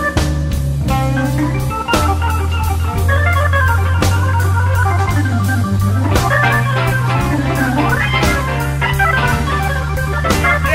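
Blues band playing an instrumental break without vocals: an organ holds chords over steady bass and a drum kit keeping time, with sliding lead notes.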